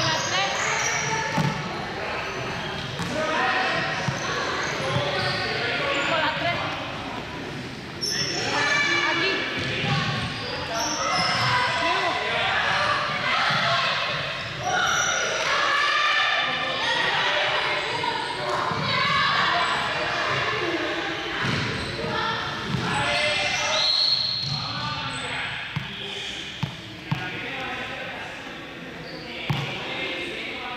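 Indistinct chatter of several voices echoing in a large sports hall, with balls bouncing and thudding on the floor; a few sharper thuds stand out shortly after the start and near the end.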